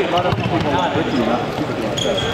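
Sneakers squeaking and thudding on a wooden gym floor as players run and cut, with players' voices calling out across the hall.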